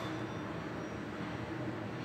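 Steady, quiet hum and air noise inside a Kone EcoDisc glass lift car, with no clicks or chimes.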